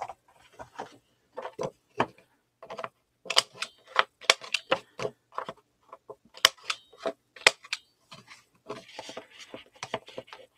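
A handheld corner rounder punch clicking sharply as it rounds the corners of black cardstock, amid taps and rustling of the card being handled.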